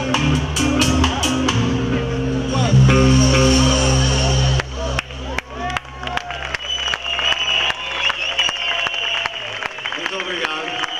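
Live rock band with electric guitar, bass and drums playing loudly, then stopping abruptly a little under halfway through as the song ends. A low note rings on and fades while the crowd claps and cheers.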